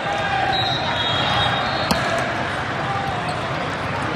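Sports-hall din of voices, with volleyballs being hit and bouncing on the surrounding courts and one sharp hit about two seconds in. A thin high tone sounds for about a second before the hit.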